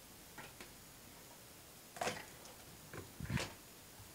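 A few scattered clicks and knocks over a faint steady hiss: two small clicks about half a second in, and two louder knocks about two seconds in and just after three seconds.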